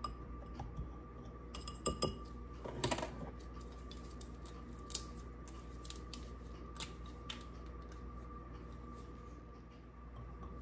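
Metal whisk clinking and scraping against a glass bowl as dry seasoning is stirred, with a cluster of clinks a couple of seconds in and a few single clicks later as it is set down. A faint steady hum lies underneath.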